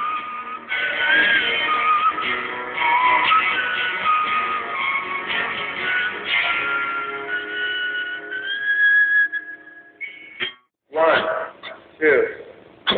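A live band playing a song on guitars: a melody line that glides in pitch over strummed chords. The playing stops about ten seconds in.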